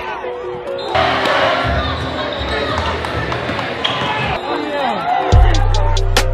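Basketball gym sounds: a ball bouncing and sneakers squeaking on the court, mixed with voices and music. The sound grows louder about a second in and again with a heavy low thud near the end.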